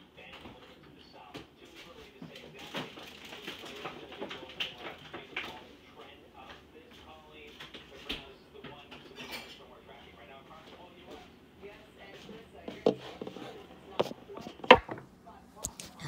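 Kitchen handling sounds: dishes and utensils clattering, with several sharp knocks in the last few seconds.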